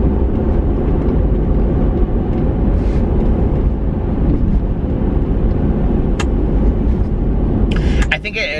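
Steady low rumble of road and engine noise inside a moving car's cabin, with a faint single click about six seconds in.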